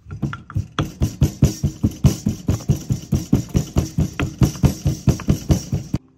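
Wooden pestle pounding garlic and ginger in a wooden mortar to make a paste: quick, even knocks of wood on wood, about five a second, stopping at the end.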